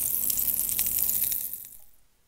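Sound effect of pancake batter sizzling in a hot frying pan: a steady crackling hiss that fades away over the last half second.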